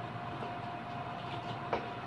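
Faint tail of a Roland EA7 arranger keyboard's last note, a single steady tone held quietly over low hiss, with a short click near the end.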